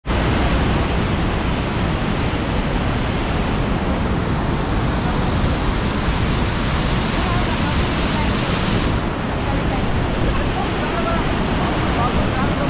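Steady rush of a waterfall cascading over rocks; the hiss in the sound drops off about nine seconds in.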